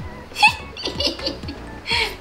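Giggling laughter in several short, high-pitched bursts, over background music.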